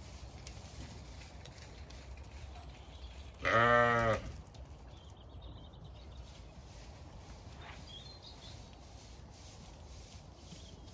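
A Zwartbles ewe bleats once, a wavering call under a second long, about three and a half seconds in.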